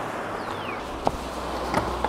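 Small Caterpillar diesel engine running steadily on avocado oil, a low even hum, with a single sharp click about a second in.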